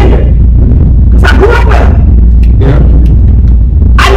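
A woman's voice preaching in two short, loud outbursts, about a second in and again near three seconds, over a constant loud low hum.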